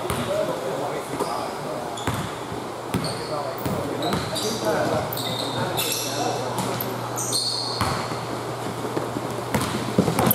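A basketball bouncing on an indoor court floor, with short high sneaker squeaks as players cut and stop, and players' indistinct voices echoing around the gym. A steady low hum runs underneath.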